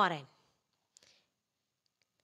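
The end of a spoken word, then near silence broken by one faint short click about a second in.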